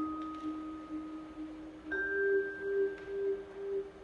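Vibraphone playing slow single notes that ring on with a pulsing tremolo; a second, higher note is struck about two seconds in and sustains.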